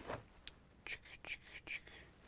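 Faint rustling and light clicks of cardboard-backed plastic blister packs being handled and pulled out of a cardboard shipping case, about five small sounds.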